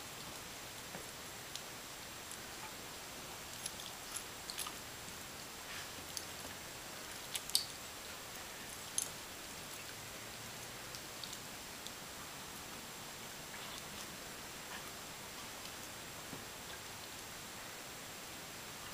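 Faint scattered crackles and clicks over a steady hiss, from a dog nosing and biting into snow; two louder clicks come about halfway through.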